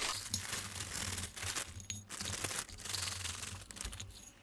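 Crinkling of a plastic cereal bag liner and the rustle of Special K Red Berries flakes as they are poured from it into a measuring cup: a continuous crackling rustle.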